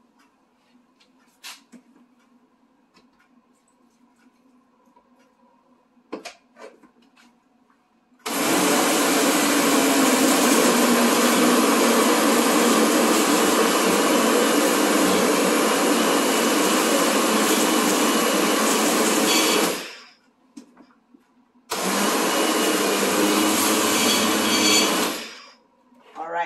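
Countertop push-button blender running, loaded with red lentils, tomato, onion and bell pepper being ground into a thick batter. After a few quiet seconds with light clicks it runs steadily for about eleven seconds, stops, then runs again for a few seconds.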